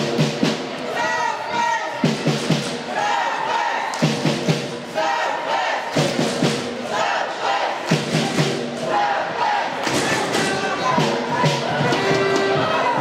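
Ice hockey spectators chanting in a repeating rhythm, one phrase about every two seconds, each marked by a few quick thumps like clapping, stamping or banging.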